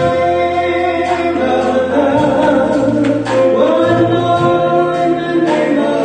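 A gospel song performed live: a woman singing lead into a microphone with a band of electric guitar, bass guitar, keyboard and drums, in long held notes over sustained chords and bass.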